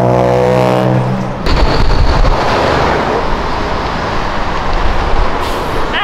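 A moment of background music cut off about a second and a half in, followed by a car passing close by on the street: loud engine and road noise, loudest just after the cut and then easing off.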